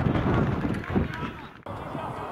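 Outdoor football-pitch ambience: players calling out, over a low rumble of wind on the microphone. The sound cuts off abruptly about a second and a half in and picks up again more quietly.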